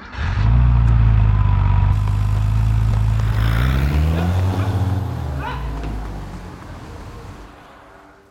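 A car engine bursting into loud acceleration as the car pulls away, its pitch climbing around the middle as it gathers speed, then fading steadily as it drives off.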